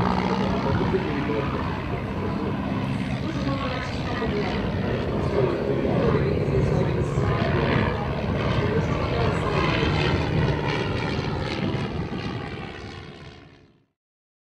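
De Havilland Tiger Moth biplane's propeller engine running, with indistinct voices mixed in, fading away toward the end.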